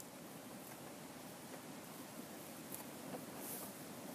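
Faint scraping and soft clicks of a knife tip drawn along a flatfish's skeleton as the fillet is lifted off; the blade is being kept close to the bone.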